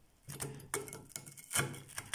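Metal fork pressing into crunchy air-fried chips and breaded chicken, making about five short, sharp crunches about half a second apart. The crunch shows the food is crisp, a bit too crunchy from 16 minutes on the chip setting.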